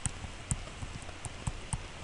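Stylus tapping on a tablet screen while handwriting: a handful of sharp, short clicks at uneven intervals over a low steady hum.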